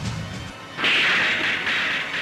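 A sudden, loud dramatic sound effect about a second in, a sharp onset followed by a hiss held for about a second, over background music.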